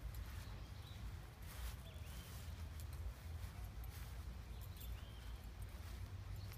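Faint outdoor ambience: a steady low rumble with a few faint, short chirps and scattered light clicks.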